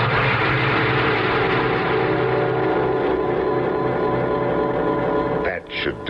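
A radio-drama sound effect: a dense, held chord of many steady tones that starts suddenly and holds for about five and a half seconds, then fades as a voice returns. It is the cue for the supernatural moment when Death and the old man exchange places.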